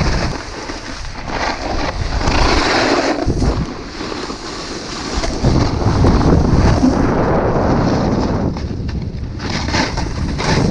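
Wind rushing over the action camera's microphone while snowboarding downhill, mixed with the hiss and scrape of the snowboard on packed snow. The rush surges and eases as the rider speeds up and carves.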